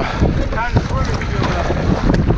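Wind buffeting the microphone over oars working in choppy sea water beside a rowing boat, with short knocks and splashes. A brief voice-like sound comes about half a second in.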